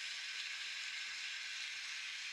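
Audience applauding steadily.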